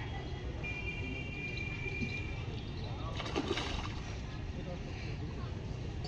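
A splash in the pond water about three seconds in, over a steady low rumble of distant traffic.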